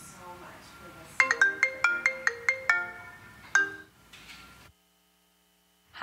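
A mobile phone ringtone: a quick run of bright, marimba-like notes, about nine in a second and a half, then one more note, before the sound cuts off to silence.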